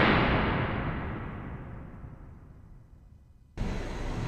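The long fading tail of a boom sound effect on an intro title card, dying away steadily over about three seconds to silence. Background room noise from the gym cuts in suddenly near the end.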